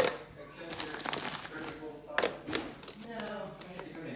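Frozen strawberries dropped by hand into a plastic NutriBullet blender cup, knocking against the cup and the fruit already inside, several knocks with the loudest at the start.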